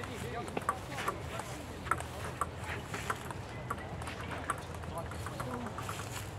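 Table tennis rally on an outdoor concrete table: a string of sharp clicks, one or two a second, as the ball is struck by the bats and bounces on the table. Faint voices of people nearby run under the clicks.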